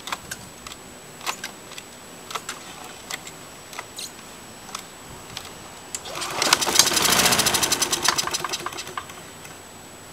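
Single-cylinder Briggs & Stratton Quantum 3.5 lawnmower engine firing about six seconds in, running for about three seconds and then dying away. It catches only briefly, which the owner thinks may be gunk in the carburetor keeping fuel from feeding.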